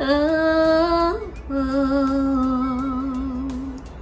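A woman singing long held notes: the first one rises slightly and flicks upward about a second in, then a longer, lower note is held with a gentle vibrato and fades out near the end.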